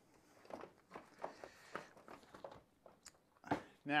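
Cloth rag wiping a chrome motorcycle fender after foil-and-water rust polishing: a series of faint, irregular rubbing strokes.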